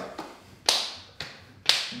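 Kali stick smacking into the palms as it is passed from hand to hand, left to right: four sharp slaps about half a second apart, every other one louder.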